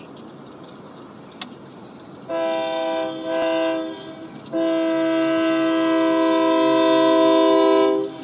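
Horn of a Union Pacific GE AC4400CW diesel locomotive sounding several notes at once: a shorter blast about two seconds in, then a long blast of about three and a half seconds that cuts off near the end. Under it runs the rumble of the passing freight train.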